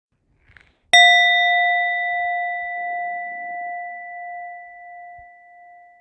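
A single struck metal bell, hit once about a second in and left to ring, a clear tone with higher overtones that fades slowly over several seconds.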